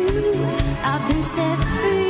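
Pop song with a woman singing over a band with a steady beat.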